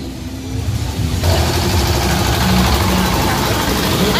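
Crowd voices over the low, steady running of a vehicle engine, with a hissing noise that jumps suddenly louder about a second in.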